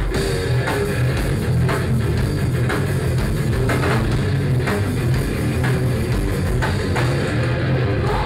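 Hardcore punk band playing live: distorted electric guitars, bass and drum kit, loud and steady, with regular drum hits.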